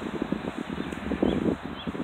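Rustling and handling noise on a phone's microphone as the phone is fumbled with, with two faint short high chirps about a second and a half in.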